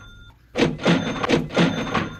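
Sports trading cards being flipped and slid from one stack to another by hand: a quick run of about five papery swishes, starting about half a second in.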